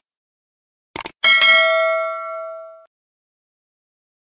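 Subscribe-button sound effect: a quick mouse click about a second in, then a bright bell ding that rings out and fades over about a second and a half.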